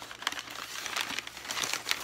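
Packing paper crumpling and rustling as hands rummage through a box of paper-wrapped items: a continuous run of crinkles with many sharp crackles.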